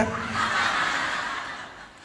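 Breathy, unvoiced laughter that fades away over about two seconds.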